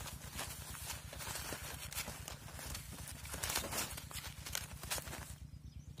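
Irregular clicks and rustles of a wire-mesh box trap and the woven plastic sack under it being handled, over a steady low rumble.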